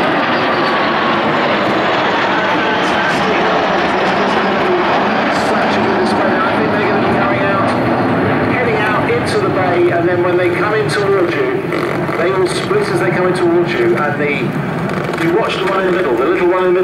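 Loud, steady jet noise from a three-ship formation flypast of a Saab 37 Viggen, a Hawker Hunter and a Saab SK-60 (Saab 105), with a faint whistle falling in pitch in the first couple of seconds as the formation passes. Voices are heard over it in the second half.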